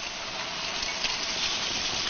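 Raw eggs sizzling as they are cracked onto river stones deep-fried in oil to about 200 °C. The hiss is steady and grows slowly louder, with a few faint ticks.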